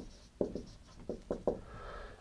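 Dry-erase marker drawing circles on a whiteboard: a quick run of about six short strokes.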